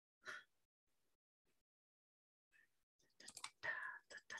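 Near silence: a short breath about a quarter second in, then soft whispered muttering starting in the last second.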